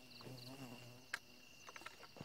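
Faint night insects calling: a steady high-pitched buzz with a fast pulsed trill over it. A short low hum sounds in the first second, a sharp click comes a little after a second in, and a few softer clicks follow near the end.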